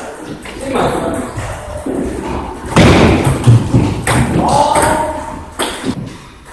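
A table tennis rally: the ball struck by paddles and bouncing on the table, the hits coming from about halfway in.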